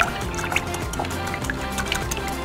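Wire whisk beating a thin liquid batter of milk, coconut milk, eggs and melted butter in a glass bowl: wet sloshing with scattered light taps of the wires, under background music.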